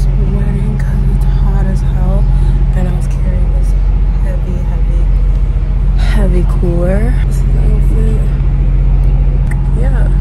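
Steady low rumble and hum inside a moving passenger train carriage.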